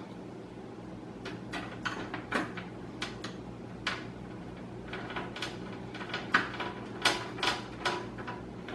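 Screwdriver driving the screw that holds a graphics card's bracket to a PC case: a string of small, irregular metal clicks and scrapes, coming more often in the second half.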